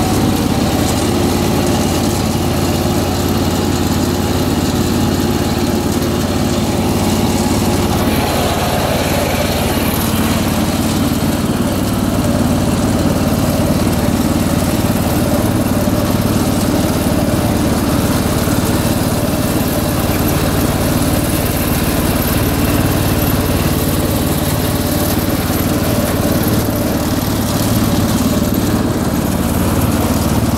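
1983 John Deere 214 garden tractor's single-cylinder Kohler engine running steadily and smoothly as the tractor is driven along, with a faint steady whine over it for the first several seconds.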